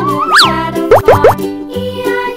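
Upbeat children's background music with cartoon sound effects: a quick swoop up and down in pitch near the start, then three short rising pops about a second in.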